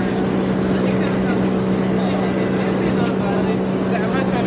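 A steady low mechanical hum holding one pitch, with faint voices of people talking over it.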